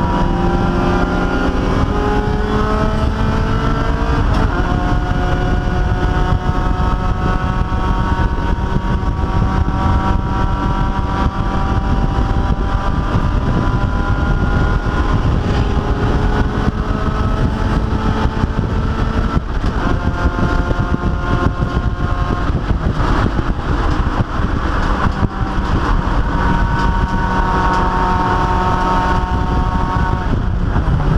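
Race car engine heard from inside the cockpit while lapping a road course, its pitch climbing slowly and dropping back a few times through the lap, over constant road and wind noise.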